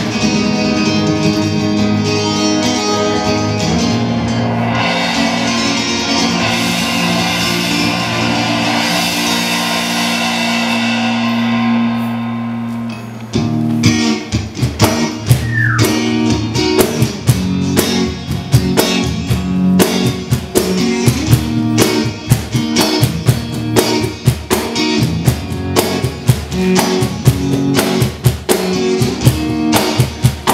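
Live rock band playing a song's instrumental opening: electric guitar holding chords under a swelling cymbal wash, then about halfway through the drum kit and full band come in with a steady beat.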